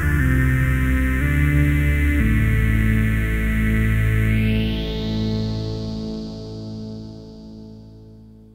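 Analog Eurorack synthesizer played from a keyboard through the AJH Next Phase analogue phaser, its phasing swept by an envelope generator. Three notes in quick succession, then a held note; about four seconds in, the phaser's sweep rises in pitch as the note fades slowly away.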